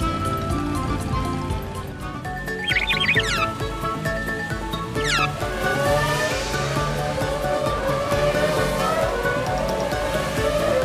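Upbeat cartoon background music. Two quick sweeping sound effects come about three and five seconds in. A slowly rising revving tone joins in the second half.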